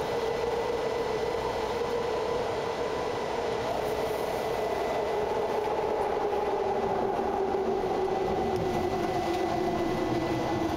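BART train heard from inside the car in a tunnel: a steady rumbling roar of wheels on rail with a droning whine that slowly falls in pitch as the train slows, plus a faint steady high tone.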